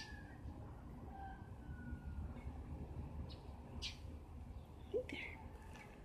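Faint outdoor background: a steady low rumble with a few thin, faint whistling notes, and short soft rustles or breaths near the middle and about five seconds in.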